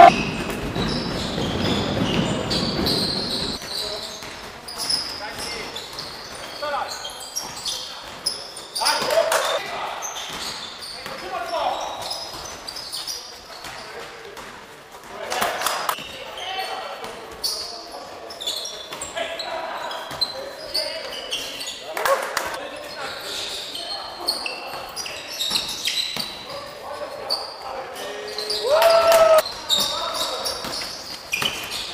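A basketball bouncing and being dribbled on a wooden sports-hall floor, with short high squeaks and players' shouts, all echoing in a large gym. There is a loud shout right at the start and another near the end.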